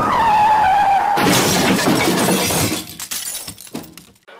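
A loud, noisy crash that fades out over about three seconds, with a falling tone in the first second.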